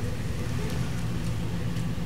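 Steady low hum under an even hiss, unchanging throughout: background noise in a pause between words.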